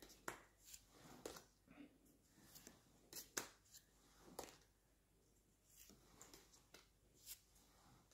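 Near silence broken by faint, scattered ticks and rustles of Pokémon trading cards being handled and swapped one behind another, the loudest a little past three seconds in.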